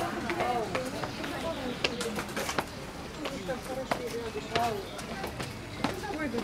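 Indistinct voices of people talking, with a few sharp clicks or taps among them.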